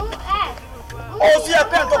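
Raised voices shouting, growing louder and more crowded from about a second in.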